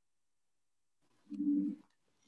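Silence for just over a second, then a brief low hum from a person's voice, like a closed-mouth 'mm', lasting about half a second.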